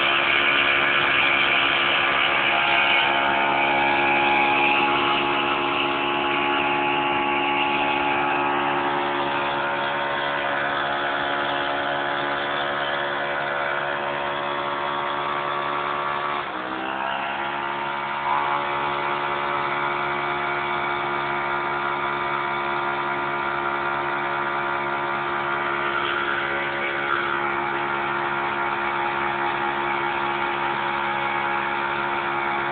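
Suzuki LT160 quad's single-cylinder four-stroke engine held at high revs for a burnout, its rear wheel spinning on the ground. About halfway through, the revs drop briefly and climb straight back, then hold steady again.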